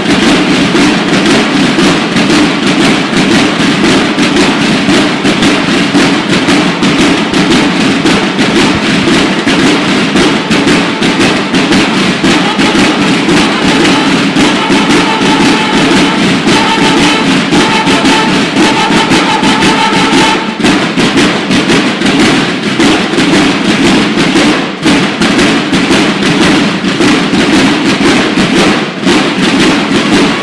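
A banda de guerra drum line playing field drums together in a fast, dense, loud cadence. Around the middle, a few held bugle notes sound over the drums.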